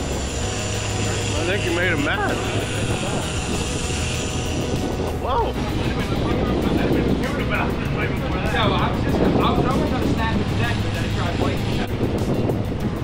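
Steady low drone of a sportfishing boat's engines, with people calling out over it as the hooked fish are fought.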